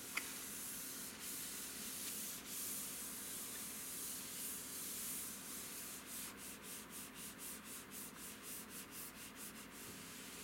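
A hand rubbing across the glass of a computer monitor gives a steady dry hiss. About six seconds in it turns into quick back-and-forth strokes, about four a second. A small click comes at the very start.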